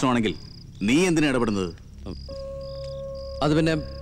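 Crickets chirping in short, regular high pulses, about two a second, with loud men's voices breaking in. A steady held tone and a low hum come in about two seconds in.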